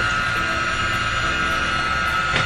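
Electric hand mixer running at a steady speed, its beaters whipping instant pudding mix with heavy whipping cream in a stainless steel bowl.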